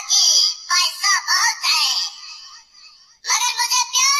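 A funny mobile ringtone playing through a smartphone's speaker: a high, thin-sounding voice singing in short phrases over music, with no bass. There is a short pause about two and a half seconds in.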